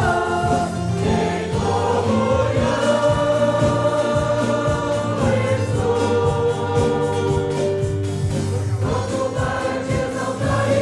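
Many voices singing a slow Portuguese hymn together, with instruments accompanying, in long held notes.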